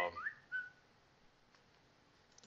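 Two short whistled notes, the first a quick upward glide and the second a brief steady pitch, just as speech stops; then quiet room tone with a faint click.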